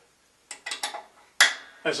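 Light metallic clicks and taps from fingers working the steel blade guide blocks and set screws of a bandsaw's lower guide assembly during adjustment: a quick cluster of small clicks, then one sharper click with a short ring.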